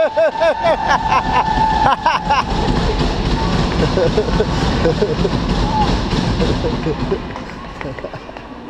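Ice hockey arena sound: over the first two and a half seconds a fast repeating rise-and-fall pitched sound with a held tone, like arena music or a horn, then spectators calling and shouting over the hall's steady din, which eases near the end.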